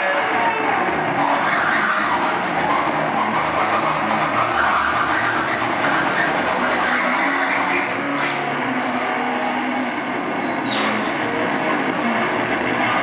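Harsh noise music played live on electronic gear: a loud, continuous wash of distorted noise. About eight seconds in, a high whistling tone enters, steps down in pitch twice over about three seconds, then drops away.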